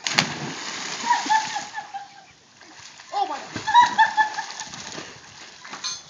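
A person plunging into an algae-filled swimming pool: one sharp splash just after the start, followed by about two seconds of churning water.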